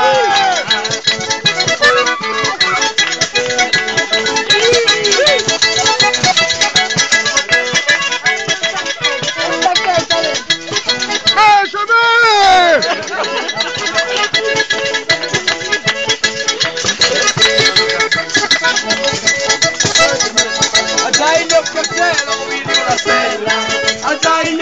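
Calabrian tarantella played on the organetto, a diatonic button accordion, over a fast, steady beat. A voice comes in briefly about halfway through, between the sung verses.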